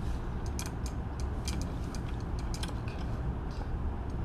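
Scattered light clicks and taps of lab equipment being handled, burette, clamps and glassware on a ring stand, irregular and a few each second, over a steady low room hum.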